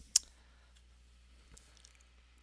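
A single sharp computer mouse click, followed by two faint clicks near the end.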